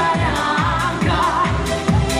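A pop song sung live through handheld microphones over an electronic backing track, with a steady kick drum of about two and a half beats a second.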